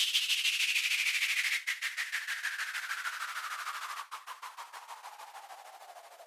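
The outro of a moombahton dance track: a fast roll of percussive hits, about eight a second, under a sweep that falls steadily in pitch, fading out to the end.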